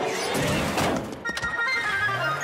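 Cartoon soundtrack: a loud, noisy scuffle-like sound effect for about the first second, a short knock, then several held musical notes.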